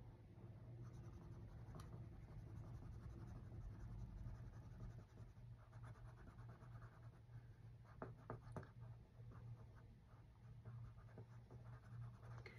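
Faint scratching of a pen on a paper card as squares are coloured in with quick back-and-forth strokes, busiest in the last few seconds.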